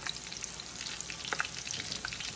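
Seasoned turkey wings deep-frying in a cast-iron skillet of hot cooking oil and bacon grease, just laid in: a steady sizzle full of sharp crackling pops.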